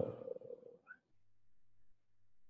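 A man's drawn-out hum or trailing "so…", held on one pitch for most of the first second. After that there is near silence with a faint low electrical hum from the recording.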